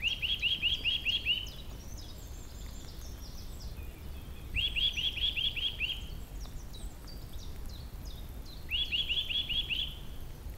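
A songbird singing a phrase of about seven quick repeated notes, three times about four seconds apart. Fainter chirps from other birds come in between, over a low steady background rumble.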